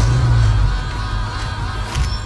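Trailer score: a deep bass hit at the start that carries on as a low rumble, under high held tones.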